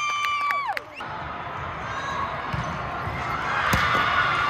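A drawn-out, high-pitched cheer from the volleyball players, cut off about a second in. Then comes the murmur of a large indoor hall and, near the end, a single sharp smack of a volleyball being served.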